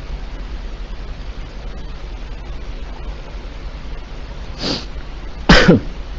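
A man sneezes once near the end: a short sharp intake of breath, then a loud sudden burst, over a steady hiss from the voice-chat line.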